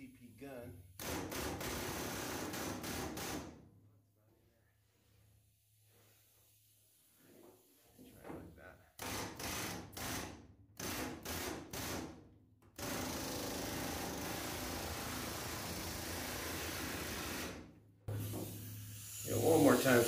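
Pneumatic air hammer with a flanging attachment, folding over the lip of a new sheet-metal bed panel. It runs in trigger bursts: a couple of seconds near the start, a string of short bursts in the middle, then a run of about five seconds. It is loud.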